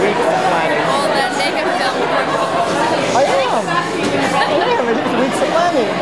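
Speech only: several voices talking over one another in steady chatter.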